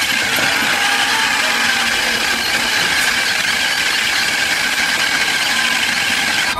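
Harsh, steady electronic static with a high whine running through it: the film's signal sound coming through a mobile phone.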